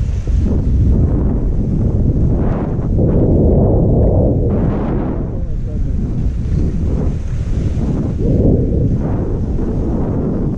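Wind buffeting a GoPro action camera's microphone as a skier moves slowly downhill, with skis hissing over the snow in two stronger swells, about three seconds in and again near the end.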